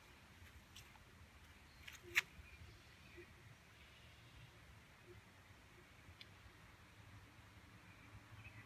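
Near silence: faint room tone with a few brief, faint clicks, the loudest about two seconds in.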